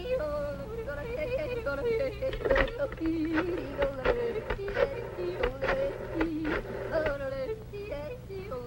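A woman yodeling, her voice flipping between low and high notes with a wavering vibrato. Audience laughter comes in partway through.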